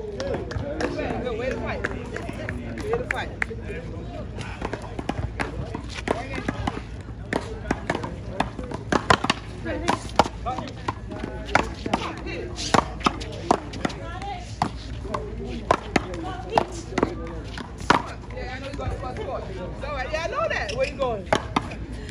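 One-wall paddleball rally: a ball smacked by paddles and rebounding off the concrete wall and court, a string of sharp, irregular hits that starts several seconds in and runs until a few seconds before the end. Players' voices are heard at the start and near the end.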